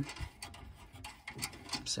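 Light mechanical clicking of a hand tool undoing the nuts on a gas boiler's burner and fan assembly, typical of a small ratchet.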